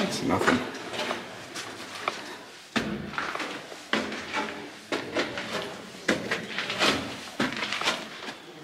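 Footsteps on a rusted steel spiral staircase with diamond-plate treads: irregular metallic clanks and knocks, about one or two a second, as the treads take each step.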